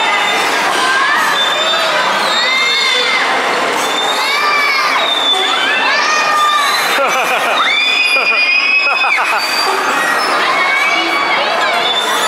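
Children screaming with excitement on a swinging fairground ride, in repeated rising-and-falling cries, with one long held scream about eight seconds in, over a steady crowd hubbub.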